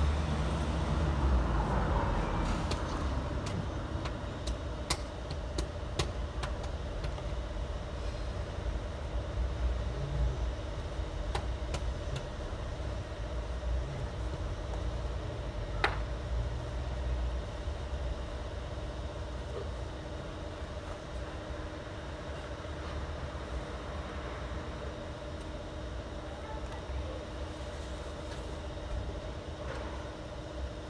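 Steady low rumble with a constant faint hum, like an engine running nearby, and a few sharp clicks.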